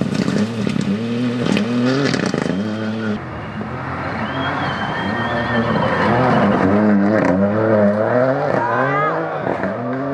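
Ford Fiesta rally car's engine revving hard, its pitch climbing and dropping again and again as it accelerates, changes gear and lifts. Gravel clatters under the tyres in the first few seconds.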